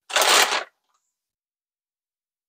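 Plastic anti-static bag crinkling as it is handled, a single rustle of about half a second.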